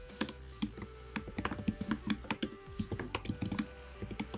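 Typing on a computer keyboard: quick, irregular key clicks in short runs with brief pauses between them.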